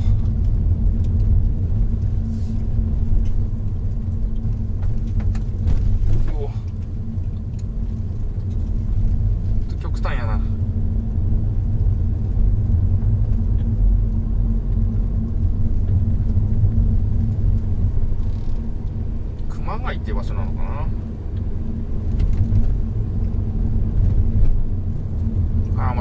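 Steady low rumble of road and engine noise inside the cabin of a Honda Odyssey RB3 minivan driving slowly along a narrow mountain road.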